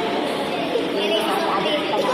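Several people talking over one another, group chatter in a large room.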